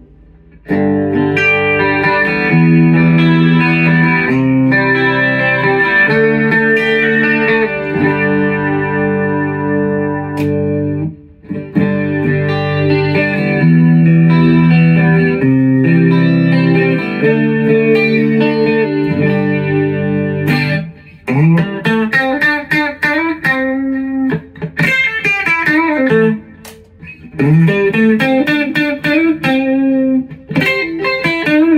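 Electric guitar, a dual-humbucker Squier Bullet Mustang HH played through an amp. For about twenty seconds it plays held, strummed chords that change every second or so. After that it switches to quicker, choppier picked notes with short gaps between phrases.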